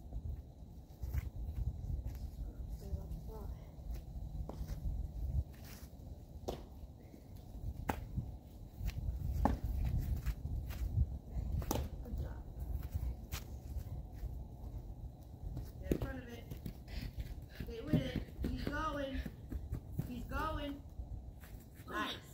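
Low rumble of wind on the microphone, with scattered sharp knocks and steps on grass. A voice talks in the last several seconds.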